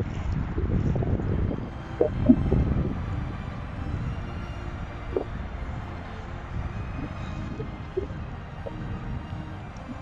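Steady low outdoor rumble, louder for the first three seconds and then easing, with a few brief faint tones about two seconds in and again near the middle.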